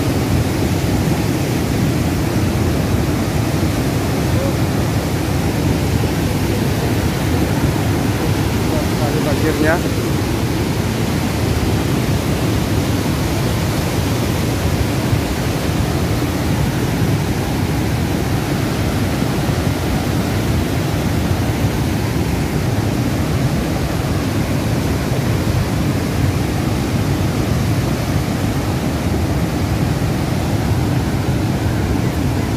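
Cold lahar, a thick flood of volcanic mud and stones, flowing down a river channel as a steady, deep rush of water and debris.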